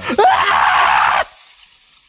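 Loud, shrill screeching of a swarm of demobats, about a second long, trailing off into a fading hiss.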